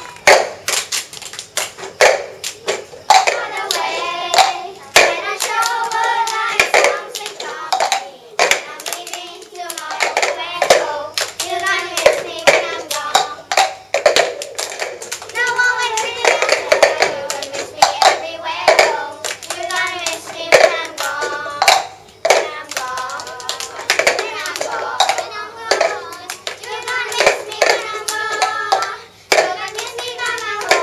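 Children singing a song together while clapping and tapping plastic cups on the floor in a repeating cup-game rhythm.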